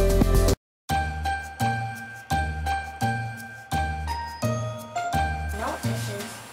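Background music ends abruptly just after the start. After a brief gap of silence, a tinkling, bell-like tune begins, its notes falling on a steady low beat.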